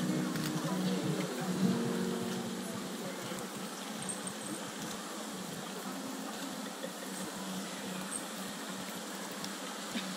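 Sustained notes of processional music fade out over the first two seconds or so, leaving a steady, even hiss of open-air ambience.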